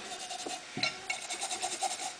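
Hand-scrubbing the rusted, pitted surface of an LP Black Beauty cowbell with an abrasive pad, a scratchy rubbing hiss in quick repeated back-and-forth strokes, taking the rust off the metal.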